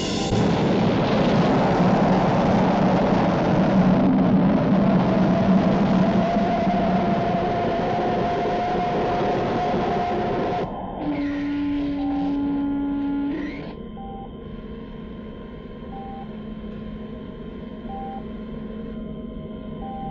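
Film sound effect of a spaceship's rocket engine firing as a braking burn for a lunar landing: a loud rushing noise over a low hum that cuts off suddenly about ten seconds in. A steady electronic tone follows for a couple of seconds, then quieter short beeps about every two seconds.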